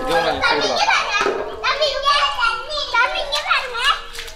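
Children's high voices, several talking and calling out at once, overlapping through the whole stretch.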